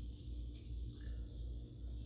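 A low, steady hum with a faint rumble and no distinct event.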